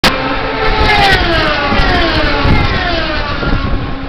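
Several Indy cars' 3.5-litre Honda V8 engines passing at racing speed, the pitch of each dropping as it goes by, over the steady din of a crowded speedway.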